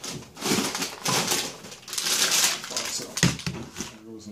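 Cardboard box handled and slid over a counter and a paperback book, rustling and scraping in several bursts, with a sharp thump a little after three seconds in as the weighted box is set down.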